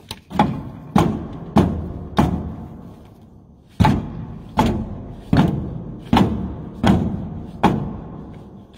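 A stone repeatedly hammering the bottom of a jammed sheet-metal door, about ten blows roughly two-thirds of a second apart with a pause near three seconds; each blow rings briefly in the metal. The door is stuck fast with age and is being knocked loose.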